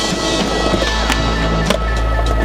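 Skateboard wheels rolling over stone paving slabs, with two sharp clicks about a second in and just after, under a backing song with a steady low end.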